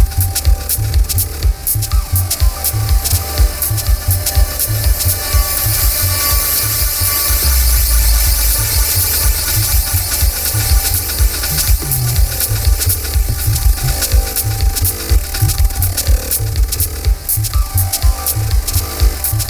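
Live avant-garde techno/IDM electronic music: dense, fast clicking percussion over a choppy pulsing bass, with a wash of hiss swelling up in the middle.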